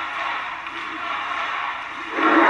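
Audience applauding, a steady even patter of many hands clapping.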